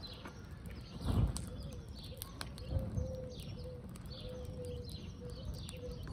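Birds in the background, with a dove cooing in a series of low notes through the second half and small birds chirping. Two low rushes of sound come about one and three seconds in.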